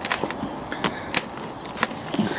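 Gloved hands rummaging through dense carrot foliage and pulling carrots out of the compost in a tub: leaves rustling, with several sharp crackles and snaps.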